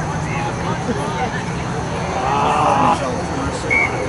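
Players' voices shouting and calling across a rugby pitch, with one louder shout a little past halfway, over a steady low rumble.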